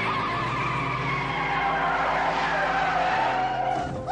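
Two pickup trucks launching hard, tyres squealing with a wavering high whine that slowly drops in pitch, over the steady sound of engines under full throttle.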